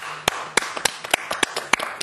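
Applause: a few people clapping by hand, the sharpest claps about three times a second, at the end of a band's song.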